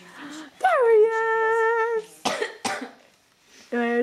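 A person's voice holding one long, steady sung note for over a second, then two short coughs.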